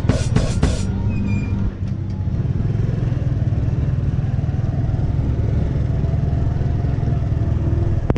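Motorcycle riding slowly, a steady low rumble of engine and wind on the microphone. Four quick clicks near the start.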